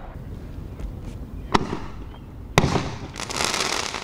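Consumer fireworks going off: two sharp bangs about a second apart, the second followed by about a second of hissing crackle.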